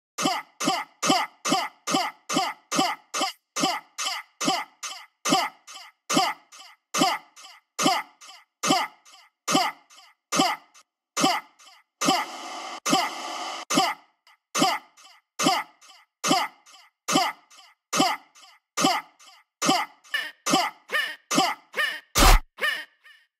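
Short percussive electronic sample looping in a steady rhythm, each hit dropping quickly in pitch, with a hiss of noise lasting about two seconds around the middle; a dubstep sound-design element heard on its own, with no bass or full beat under it.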